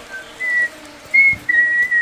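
Baby squirrels giving thin, high, whistle-like squeaks: a few short calls, then a longer drawn-out one from about a second and a half in.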